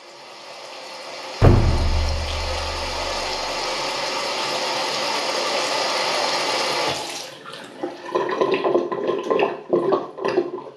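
Water pouring from a waterfall-spout basin tap, swelling in over the first second or so, with a deep thump about a second and a half in. The flow cuts off suddenly about seven seconds in, and irregular drips and gurgling splashes follow.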